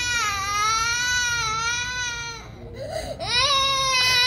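A three-year-old girl crying: one long, drawn-out cry that breaks off about two and a half seconds in, then, after a brief pause, a new cry starting just after three seconds.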